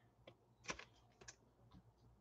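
Faint, irregular clicks of trading cards being handled and flipped through by hand, about half a dozen ticks with the loudest a third of the way in.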